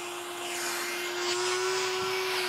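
Electric fan blower running steadily: a constant motor hum over the rush of its airstream, which is keeping a ball floating in mid-air.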